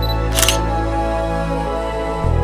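Background music with steady chords over which a single-lens reflex camera shutter fires once, about half a second in, as a quick sharp double click.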